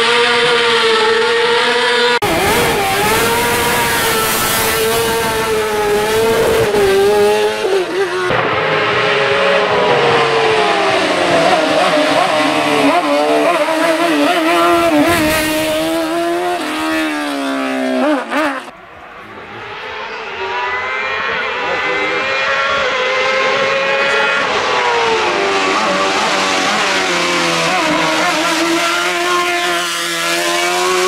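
Osella PA21 JRB sports-prototype racing car accelerating hard uphill, its engine note climbing and dropping back again and again through the gear changes. The sound changes abruptly about two and eight seconds in. Just before the twenty-second mark it falls away sharply, then builds again as the car approaches.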